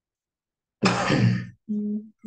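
A person clearing their throat once, a loud rasping burst about a second in, followed by a short steady hum near the end.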